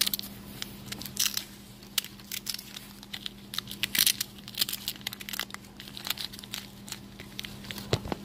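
Cloth reptile shipping bag rustling and crinkling in short, irregular bursts as fingers work at its knot to get it open.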